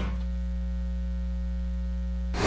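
Steady electrical mains hum, a low buzzing drone with its overtones.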